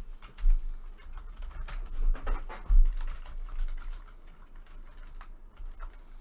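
Typing on a computer keyboard: irregular bursts of key clicks, with two dull thumps against the desk, about half a second in and near the middle, that are the loudest sounds.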